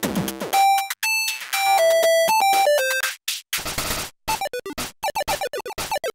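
Teenage Engineering PO-20 Arcade playing a chiptune pattern of buzzy, stepped synth notes. About three seconds in, a held punch-in effect chops the pattern into a rapid stutter of very short repeated hits.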